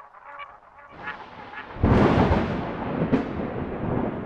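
Outro sound effects: a few short pitched tones, then about two seconds in a much louder, dense rumbling noise with heavy bass.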